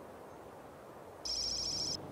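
A telephone ringing with a trilling high ring. It starts a little over a second in and cuts off abruptly, over a faint steady hiss.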